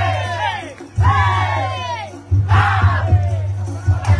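Loud drum-heavy street-dance music with a group of voices yelling together over it, in long shouts that fall in pitch, one about a second in and another about two and a half seconds in.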